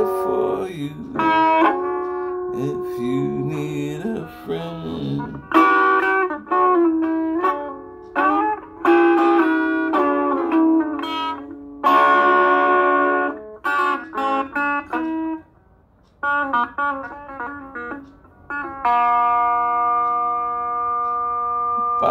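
Semi-hollow electric guitar strummed in chords and short runs of notes, with a brief pause about two-thirds of the way through. Near the end a final chord is left ringing.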